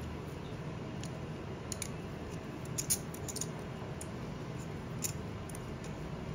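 A few short metallic clicks and scrapes as a hex driver is worked in the screws of a stainless steel distractor clamp, over a steady low hum.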